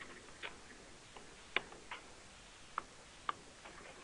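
A handful of short, sharp clicks at uneven intervals over quiet room hiss, the loudest about a second and a half in.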